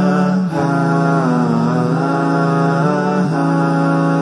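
Chant-style vocal interlude music: a melodic vocal line that bends up and down over a steady held low drone note.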